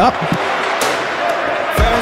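Ice hockey play heard in the rink: a steady hiss of skating and play, with a couple of sharp knocks and a louder low thump near the end.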